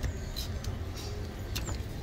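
Outdoor street background: a steady low rumble of road traffic, with a few clicks from the phone being handled.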